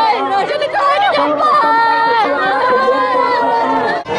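A woman shouting and crying out in Khmer close to the microphone, with other voices overlapping, her cries long and drawn out with sliding pitch.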